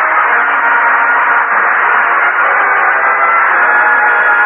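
Radio studio orchestra playing a musical bridge of held chords that close the act, with audience laughter underneath at the start, heard through a narrow, muffled vintage broadcast recording.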